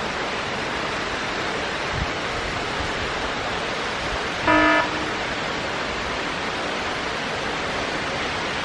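Steady rushing of falling water. Near the middle, a vehicle horn toots once, briefly.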